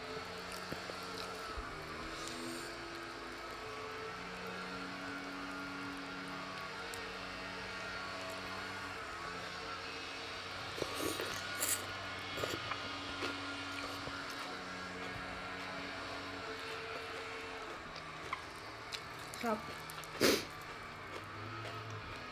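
Eating sounds of rice noodles being taken by hand and chewed: a few short sharp slurps and smacks around the middle and again near the end, over a steady low drone that shifts slowly in pitch.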